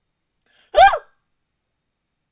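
A woman's brief, high-pitched vocal reaction, like a gasp or whimper, falling in pitch, about a second in; otherwise near silence.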